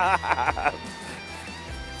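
A man laughing briefly at the start, over background music with guitar.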